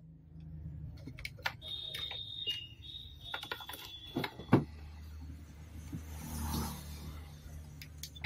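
Digital multimeter's continuity buzzer beeping: a high, steady tone in a few short stretches over a couple of seconds as the probes touch the circuit board. Light clicks of the probes and handling sound around it over a low steady hum.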